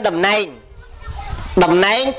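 Speech only: a monk preaching in Khmer into a microphone, with a pause of about a second in the middle.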